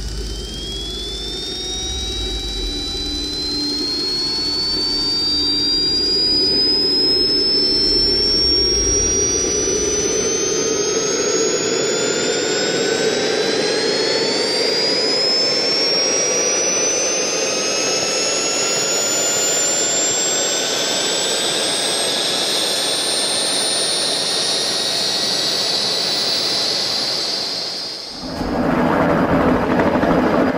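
JetCat P-180NX model jet turbine spooling up: a high whine that climbs steadily in pitch for almost half a minute. Near the end it breaks off into a helicopter running.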